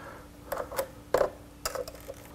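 Light clicks and ticks of multimeter test probes touching the metal screw terminals on a control panel's terminal strip, several in quick succession, over a faint steady hum.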